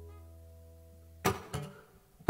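Acoustic guitar's last chord ringing out and fading away, then a sharp knock a little after a second in and a smaller one just after.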